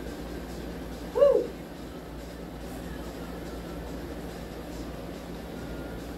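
A woman's short 'whoo' call, rising then falling in pitch, about a second in, voiced during fast criss-cross crunches, over a steady low room hum.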